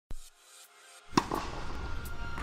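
Intro sound design with electronic music: a sharp hit just after the start, then a louder impact about a second in that opens into music with a deep, steady bass.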